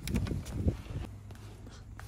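A few soft knocks and rustling from hands and the handheld camera moving around inside a car's centre console, followed by a low steady hum.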